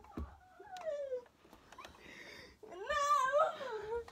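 Two drawn-out, meow-like cries. The first falls in pitch about half a second in; the second, louder and wavering, starts a little before three seconds in and falls away at the end.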